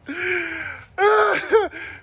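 A man laughing loudly and wordlessly: a drawn-out sound over the first second, then several short, loud bursts that fall in pitch.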